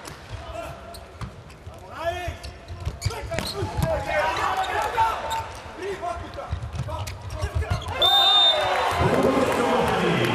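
Volleyball rally in an indoor arena: the serve and sharp hits of the ball, with players' shouts. About eight seconds in a short high whistle ends the rally and the crowd cheers louder.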